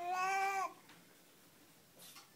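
A baby's high-pitched vocal whine, one held note that ends abruptly well under a second in.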